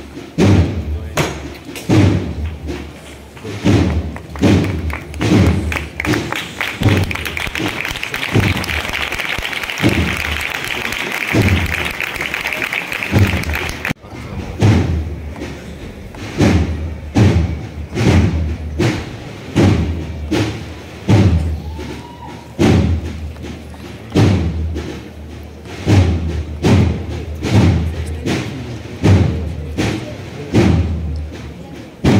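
A procession drum beating a slow, steady march pulse, roughly one heavy stroke a second, with no melody. About halfway through, a dense rushing noise that has been building stops suddenly.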